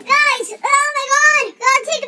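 A child's voice singing wordless notes that each rise and then fall in pitch, about three of them in a row with short breaks between.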